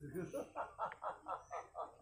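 A person laughing in a quick, even run of short 'ha' pulses, about five a second, starting about half a second in.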